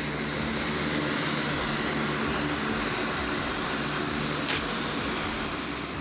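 Four-engine turboprop transport plane running its engines on the ground: a steady propeller and turbine noise with a low droning hum, easing slightly near the end.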